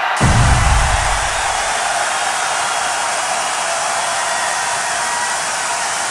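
Fire sound effect: a steady, loud rush of noise that opens with a low thump and cuts off suddenly at the end.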